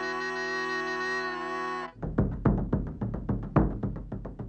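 Uilleann pipes playing a slow tune over a steady drone, cutting off suddenly about halfway through. They are followed by a quick, uneven run of drum hits, about four a second.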